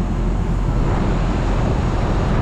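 Steady low rumble and hum of rooftop machinery, with wind buffeting the microphone.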